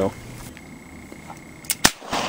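A single sharp revolver shot near the end, preceded a moment earlier by a much fainter crack. A short laugh at the start.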